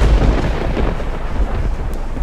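Loud rumbling, rustling handling noise on the microphone that starts suddenly and stays uneven.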